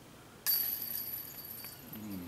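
A disc golf disc striking the hanging chains of a metal basket on a made comebacker putt: a sudden metallic clank about half a second in, then a high jingling ring that fades slowly.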